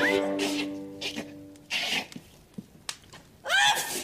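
A music cue fades out over the first second and a half. Then a woman with a heavy cold blows her nose into tissues and sneezes loudly near the end.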